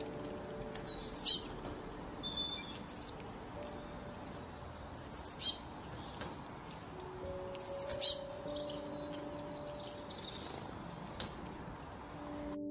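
Small songbird chirping in short bursts of three or four quick, high, falling notes, four such bursts, with a few single chirps later. Soft, sustained background music plays underneath.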